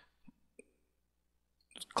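Near silence with two faint clicks of a computer mouse button, about a quarter and a half second in.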